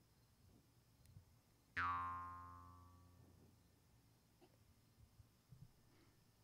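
A single pitched, boing-like tone starts suddenly about two seconds in and dies away over about a second and a half, with the high end fading first; near silence otherwise.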